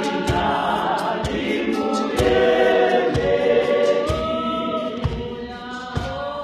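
Women's choir singing a gospel song, voices rising and falling, over a steady low thump that falls about once a second.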